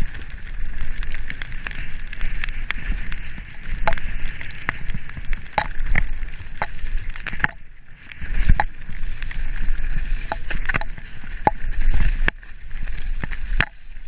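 Mountain bike riding fast down a muddy dirt trail: a steady hissing rolling noise from the tyres, a low rumble of wind on the camera, and frequent sharp clicks and clatters from the bike over bumps.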